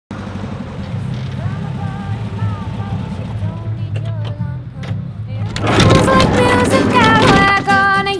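The air-cooled engine of a Volkswagen bay-window camper van runs low as the van pulls in, under faint music. About five and a half seconds in, the song comes in much louder, with pitched instrument notes and a voice.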